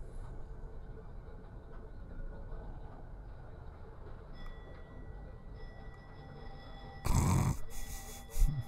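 Tram running along its track, heard from the driver's cab as a steady low rumble. About seven seconds in, a loud brief sound cuts in.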